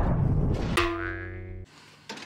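Edited-in transition sound effect: a loud noisy rush that stops sharply, then a ringing, boing-like pitched tone that fades for under a second and cuts off shortly before the end.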